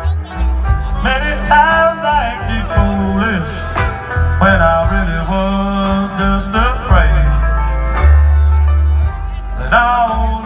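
Live country band playing an instrumental stretch between vocal lines: a bending guitar lead over upright bass, drums and organ, loud and bass-heavy.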